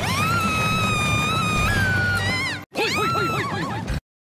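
A young woman's voice-acted scream: one long high-pitched cry held for about two and a half seconds, rising at the start and jumping up in pitch before it breaks off, over background music. After a brief gap comes a run of quick, short shouted syllables, like rhythmic "hup" calls.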